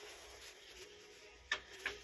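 Two sharp clicks about a third of a second apart near the end, over a faint steady tone: glass pieces knocking together as they are handled on a glass display shelf.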